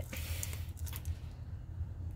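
A long sniff through the nose, taking in the scent of a small jar of bath dust, lasting about a second, then fading. A steady low hum runs underneath.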